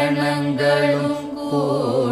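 A man's voice singing a Carnatic vocal phrase in raga Surutti. He holds long notes with wavering ornaments (gamakas), and the line turns into a quicker, winding run near the end.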